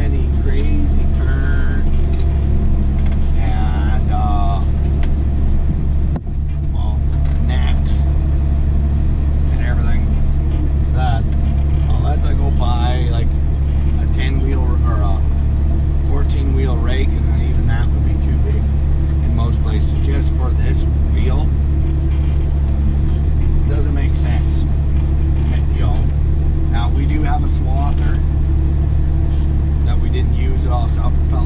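Tractor engine running steadily while pulling a hay rake, heard from inside the cab as a deep, even drone, with a brief dip about six seconds in.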